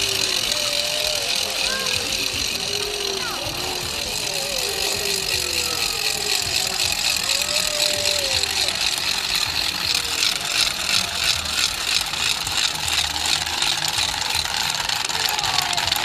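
Hand-held wooden ratchets (Rätschen) rattled in a fast, continuous clatter, growing more rhythmic about two-thirds of the way through, with crowd voices underneath.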